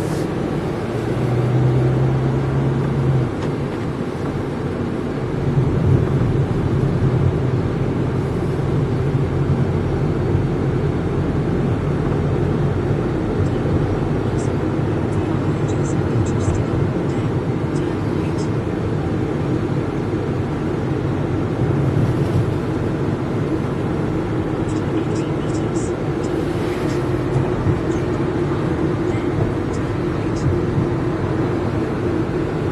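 Steady engine and road noise inside a car's cabin as it drives in slow city traffic.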